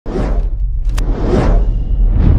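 Intro sound effects for an animated logo: two whooshes about a second apart over a loud, steady deep bass, with a short sharp click between them.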